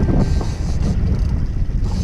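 Wind buffeting the microphone on a small boat at sea, with the wash of the water beneath it.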